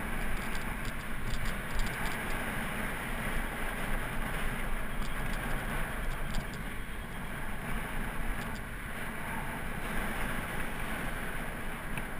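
Steady wind buffeting on a bicycle-mounted camera's microphone while riding, mixed with road rumble and the noise of surrounding car traffic, with faint light ticks now and then.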